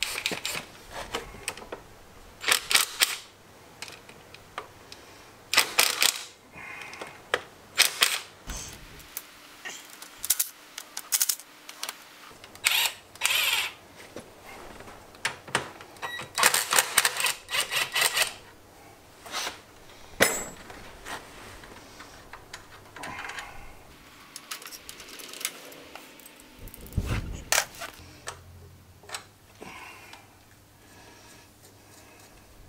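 Cordless drill-driver undoing the screws of a Honda TLR200's right-hand crankcase cover, in a series of short bursts of spinning and clattering a second or two apart. A dull thump comes near the end.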